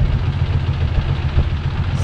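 The engine of a Thai longtail boat running steadily with the boat under way, its sound mostly low-pitched and even.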